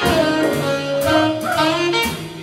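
Live jazz ensemble of saxophones, trumpet and trombone with piano, upright bass and drums, playing together; several horns hold notes at once over light drum strikes.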